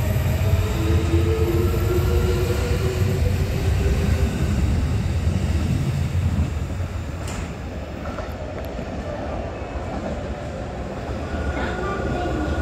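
Kintetsu electric train running past close along a station platform, with a loud wheel rumble and a few steady motor tones. About six or seven seconds in it gives way to a quieter sound of a train approaching, with one sharp click a little after that.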